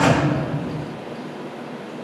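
Title-card whoosh sound effect with a low rumble that hits at once and fades over about half a second, leaving a faint steady hiss.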